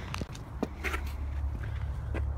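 Footsteps on snow-covered pavement, a few faint, irregular crunches, over a steady low rumble on the phone's microphone.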